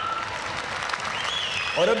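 Large audience applauding in a big hall, an even clapping sound throughout, with a man's voice coming back in near the end.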